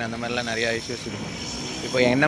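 A man talking, with a steady vehicle engine hum underneath.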